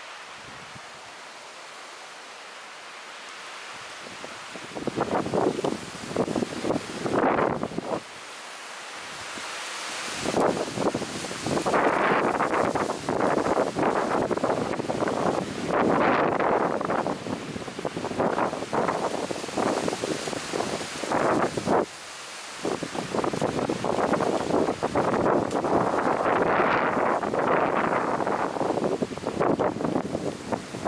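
Gusty wind noise: a rushing sound that surges and drops in uneven spells, starting about five seconds in after a quieter opening.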